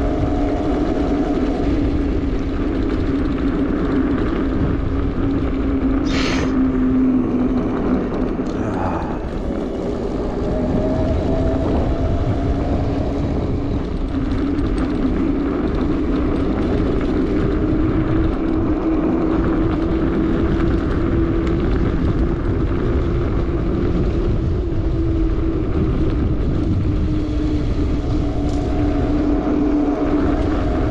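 Bafang BBSHD mid-drive e-bike motor whining steadily under throttle, its pitch drifting slowly up and down with speed, over wind rumble on the microphone and tyre noise on the dirt trail. A brief higher-pitched sound cuts through about 6 seconds in.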